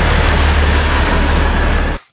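Diesel locomotive of the Matheran narrow-gauge toy train running as it approaches: a loud, steady engine rumble with one sharp click about a quarter second in. It cuts off abruptly at the end.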